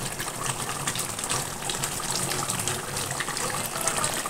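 Chicken and potato curry simmering in a steel wok: a steady sizzle with fine crackling bubbles.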